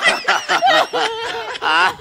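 People laughing in quick, broken bursts, with a higher, wavering laugh near the end.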